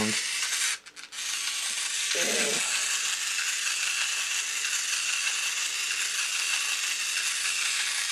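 Small battery-powered motor driving the 3D-printed plastic Nautilus spiral gears and linkage legs of a quadruped walking robot, running steadily with an even high whine.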